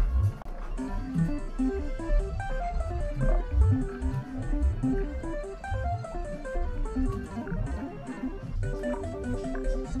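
Instrumental music: a melody of short plucked guitar notes over a bass line.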